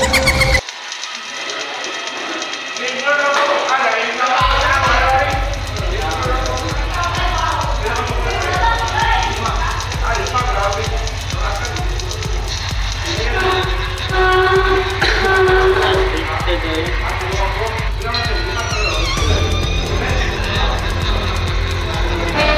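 Background music that picks up a steady bass beat about four seconds in, with a voice over it.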